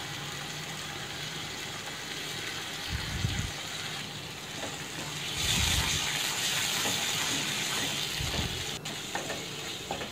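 Curry-leaf paste and onion-tomato masala sizzling as they fry in oil in a nonstick kadai, stirred with a wooden spatula; the sizzle grows louder about halfway through, with a few soft bumps of the spatula in the pan.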